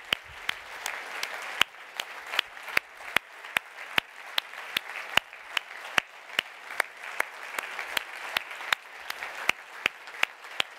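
An audience applauding steadily. Sharp single claps, evenly spaced at about two and a half a second, stand out close by above the general clapping.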